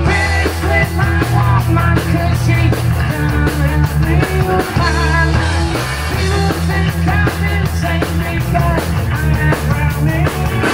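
A live rock band playing loud and steady: amplified electric guitars through Marshall amps, and a drum kit.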